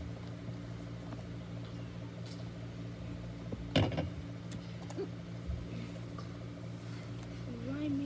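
Handling noise as leaves and grass are put into a plastic ant container: small clicks and one sharp knock about halfway through, over a steady low hum in the room. A voice is heard briefly near the end.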